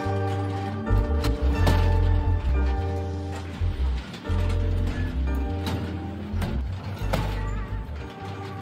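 Background music with a heavy, pulsing bass line, held synth-like tones and sharp percussive hits.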